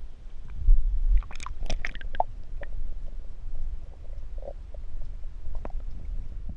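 Lake water gurgling and sloshing around a camera as it goes under the surface: a muffled low rumble with a quick cluster of small clicks and pops about a second and a half in, then scattered ticks underwater.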